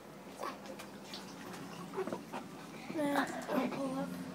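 A few faint short knocks and rustles, then a high-pitched voice about three seconds in.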